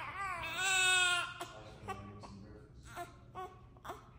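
Newborn baby, two weeks old, crying: one long, strong cry that ends after about a second, then fainter short sounds.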